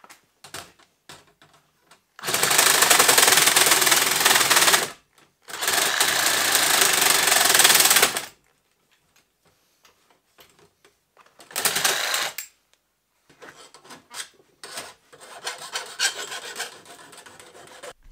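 Reciprocating saw cutting, in two long runs of about three seconds each and then a short burst, with lighter handling knocks near the end.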